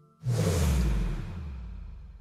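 A whoosh transition sound effect with a low falling boom beneath it, starting suddenly about a quarter second in and fading away over the next second and a half, as an animated video's intro moves from one logo card to the next.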